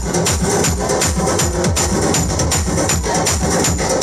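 Loud music with a fast, steady beat, played for street dancing.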